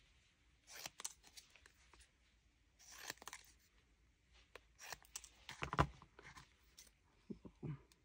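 Small craft scissors snipping paper as a little stamp piece is trimmed down: several short, quiet cuts spread through, the loudest a little before six seconds in.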